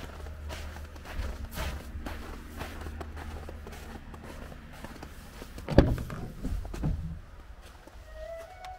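Footsteps crunching on a thin layer of fresh snow at a steady walking pace, about two steps a second, over a low steady rumble. A single louder, sharper sound about six seconds in.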